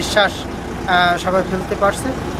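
A man speaking Bengali in short phrases over a steady low background rumble.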